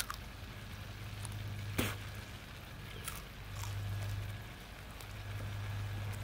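A raw radish being bitten and chewed: sharp crunches near the start and at about two seconds, then moist chewing, over a low steady hum.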